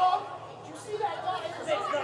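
A man shouting in a wrestling ring over the chatter of a small crowd, echoing in a large hall.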